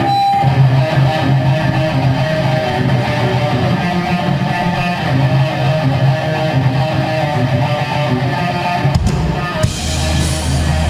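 Live rock band's electric guitars playing the opening riff of a song through amplifiers. About nine seconds in, a heavy low hit comes as the drums join.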